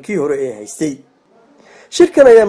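A narrator speaking Somali for about a second, then a short pause and an audible breath in before the next phrase.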